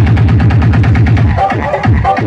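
Loud electronic dance music from a DJ sound system, with a heavy, fast, repeating bass beat.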